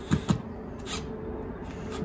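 A few brief knocks and scrapes as a plastic line-set cover is handled and fastened against vinyl siding, the loudest two in quick succession right at the start, over a faint steady hum.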